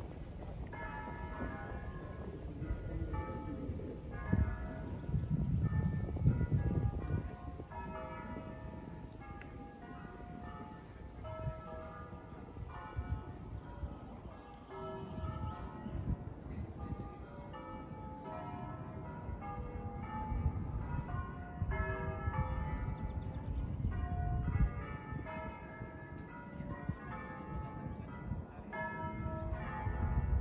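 A ring of five church bells in E, swung in a full peal, heard from far off, their strokes falling irregularly and overlapping. A low rumble comes and goes beneath them, strongest about five to seven seconds in.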